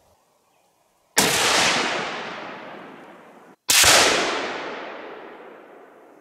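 .243 Tikka T3 Lite bolt-action rifle fired twice, about two and a half seconds apart. Each shot cracks and its report fades slowly over about two seconds.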